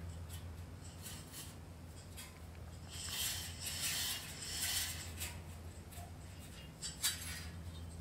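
Faint rattling and clinking of a gantry crane's chain hoist and the steel chamber hanging from it as the hand chain is worked, with a sharp click near the end, over a steady low hum.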